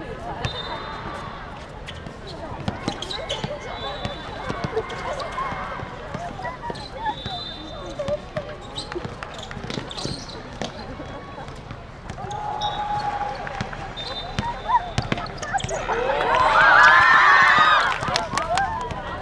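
A basketball bouncing on a hard outdoor court during play, heard as scattered sharp knocks, with players calling out across the court. It builds to a louder stretch of overlapping shouting near the end.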